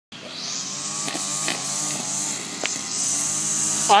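Roadside ambience: a steady high-pitched buzz over the low hum of a car coming up the road, with a couple of faint clicks.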